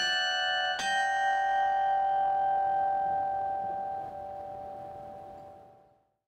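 Closing music sting of struck, bell-like notes: one at the start and another about a second in, which rings on and slowly fades away over about five seconds.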